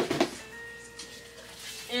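Clatter of an empty cardboard shoebox being dropped, dying away in the first moment with a few small knocks, then faint background music holding a steady note.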